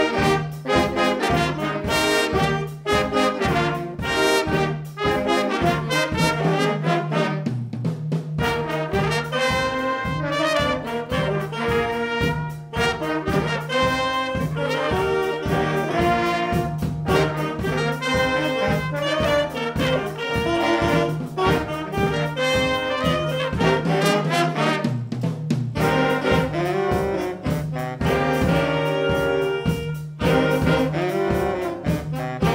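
A school jazz big band playing a jazz chart: saxophones, trumpets and trombones over piano, bass and a drum kit keeping a steady beat.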